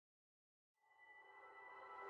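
Silence for most of the first second, then the intro of the next song fades in, faint at first and slowly swelling, with held, steady tones.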